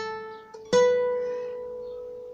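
Classical guitar playing a slow single-note melody on the first string. A note at the fifth fret (A) is still ringing, then a slightly higher note at the seventh fret (B) is plucked about three-quarters of a second in and left to ring and fade.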